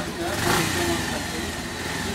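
Motorcycle engine running steadily at low speed.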